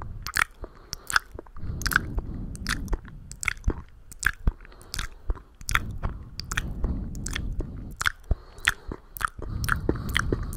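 Wet ASMR mouth sounds made right at the microphone with hands cupped around it: irregular tongue clicks and lip pops, several a second, with a low muffled rumble at times.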